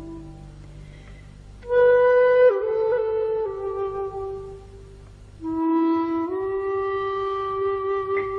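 Slow solo flute music: long held notes that step down in pitch and fade, a quieter gap, then a new note about five and a half seconds in that slides up and is held.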